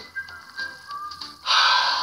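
A few thin high tones stepping down in pitch, like a short musical sting. About a second and a half in, a loud breathy sigh from a man follows.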